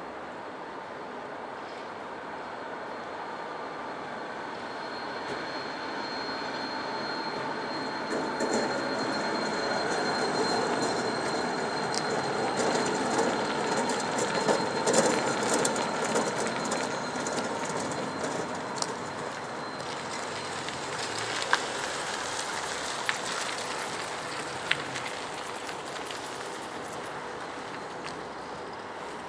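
Low-floor articulated tram running past on its rails, its sound swelling to a peak as it passes close by and then easing off. A thin high wheel squeal runs over the rumble through most of the pass, with a few sharp clicks near the end.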